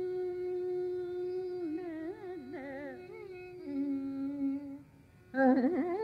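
Female Carnatic vocalist singing in raga Shanmukhapriya over a steady tanpura drone. She holds one long note, moves into quick oscillating gamaka ornaments, settles on a lower held note, breaks off briefly about five seconds in, then starts a new oscillating phrase.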